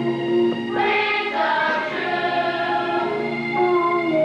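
Music with a choir of voices singing held notes, with a fuller passage about a second in.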